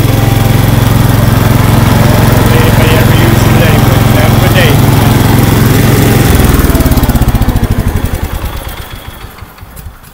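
Cub Cadet 149 garden tractor's single-cylinder Kohler engine running steadily, then shut off a little past six seconds in, its firing slowing as it coasts to a stop.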